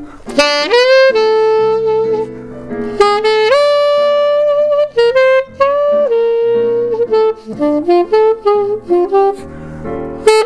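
Saxophone playing a jazz melody, with long held notes in the first half, several of them scooped up into pitch, and quicker, shorter notes later. Digital piano chords play underneath.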